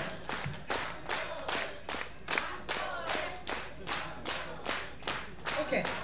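Many hands clapping together in a steady rhythm, about two and a half claps a second, with voices faint beneath.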